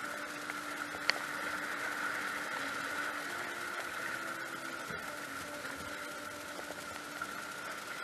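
Steady rush of whitewater from a river rapid, with a single sharp click about a second in.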